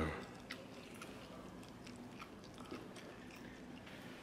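Quiet sipping from a small cup of liquor over a few faint, scattered small clicks.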